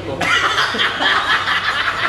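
Two men break into loud, hearty laughter together a moment in, a fast run of ha-ha pulses.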